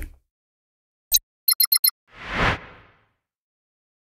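News-bulletin transition sound effect: a click about a second in, four quick high electronic pips, then a whoosh that swells and fades.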